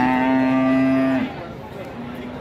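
One of the cattle moos once, a long steady call that breaks off a little after a second in.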